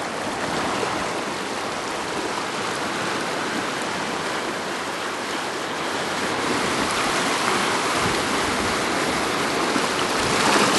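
Shallow seawater washing over a rocky, weedy shore shelf: a steady rushing of moving water that grows a little louder in the second half.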